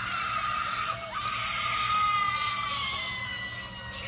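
Hanging ghost bride animatronic playing a recorded woman's scream: a long, high wail that breaks off and starts again about a second in, then slowly sinks in pitch.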